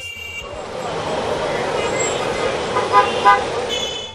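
Busy road traffic noise with a car horn tooting twice in quick succession about three seconds in.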